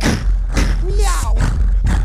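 Live vocal looping played through PA speakers: layered voice loops with a sung, cat-like 'miau' phrase over a beatboxed rhythm of regular hits and a steady bass. The phrase repeats about every two and a half seconds.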